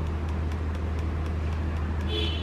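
Steady low hum under a haze of noise, with faint scattered ticks.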